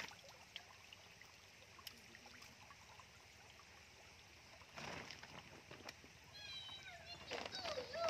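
Quiet stream-side background with one brief splash of water from hand-scooped stream water about five seconds in. Near the end come a few short high chirps, then a person's voice.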